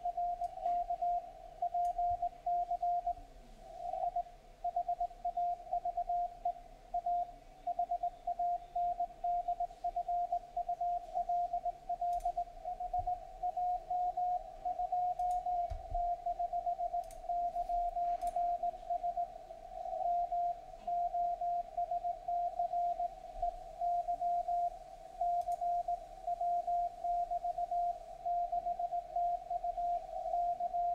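Morse code (CW) signal on the 40-metre amateur band, heard through a software-defined radio receiver: a single mid-pitched tone keyed on and off in quick dots and dashes throughout.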